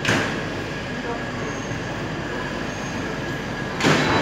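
Diesel-hauled passenger train pulling slowly out of the station: a steady rolling rumble, with two short, loud rushes of noise, one at the start and one just before the end.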